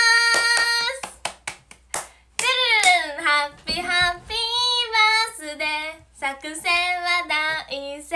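A young woman singing unaccompanied, holding and sliding notes, broken by several short sharp taps about one to two seconds in.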